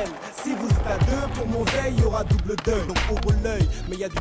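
Skateboard wheels rolling on concrete and the board grinding along a concrete skatepark ledge, under a hip-hop backing track with deep bass hits that drop in pitch.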